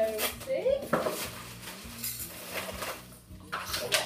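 Picnic-set plates and cutlery clinking and clattering as they are handled, in several short rattles with a sharp knock about a second in.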